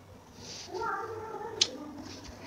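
A short pitched vocal sound, like a cat's meow, lasting about a second, followed by a single sharp mouse click as the paused debugger is resumed.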